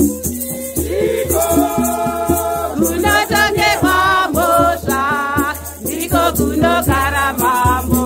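A group of women singing a hymn together, accompanied by gourd rattles shaken in a steady beat. The singing grows fuller about a second in.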